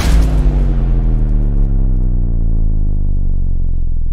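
Logo sting for an end card: a sudden deep hit, then a long low sustained tone that holds steady while its brightness slowly fades away.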